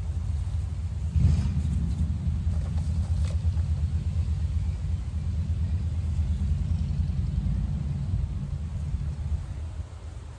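Wind buffeting the microphone: a steady low rumble that surges about a second in and eases near the end.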